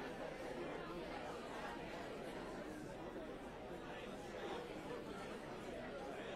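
Many people talking at once, a steady background of indistinct chatter with no one voice standing out.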